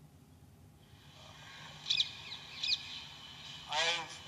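Two short bird chirps, about a second apart, over a faint outdoor hiss.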